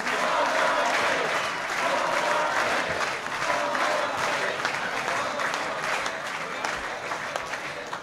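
Crowd applauding, with voices talking underneath; the clapping eases off slowly toward the end.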